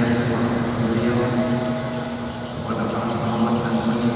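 A man's voice chanting in long, held phrases, with a short break a little over two seconds in.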